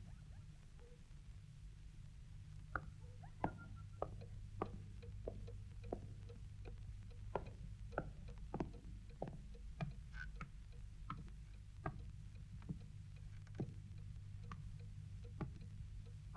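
Quiet room sounds: scattered light clicks and small knocks, irregular, about one or two a second, over a steady low hum.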